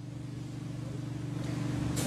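A vehicle engine running with a low, steady hum and a fast pulse, growing slowly louder.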